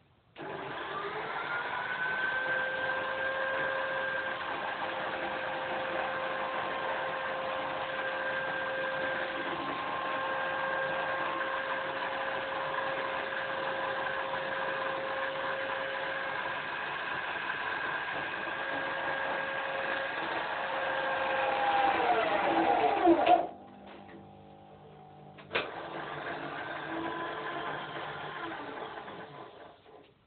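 A corded electric hand drill mounted in a homemade wooden drill press spins up with a rising whine and runs steadily for about twenty seconds. It then gets louder and drops in pitch as it slows under load in the wood, set too slow for the job, and stops. A couple of seconds later it runs again briefly and winds down near the end.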